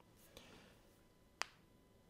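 Near silence in a pause of speech, broken by a single short, sharp click about a second and a half in.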